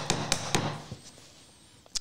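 A chisel chopping into the waste wood of a dovetail: three quick, sharp knocks in the first half second, then one faint tap near the end.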